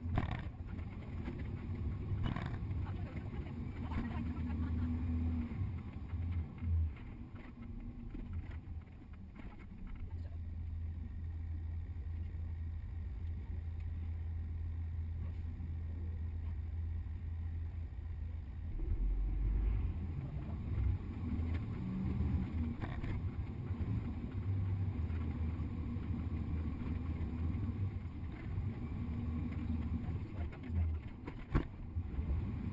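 Steady low rumble of a double-decker tour bus under way, heard from its upper deck, with engine drone and road noise and a few short knocks; it swells louder about two-thirds of the way in.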